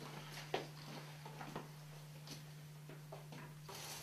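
Quiet room tone with a steady low hum and a few faint, scattered knocks.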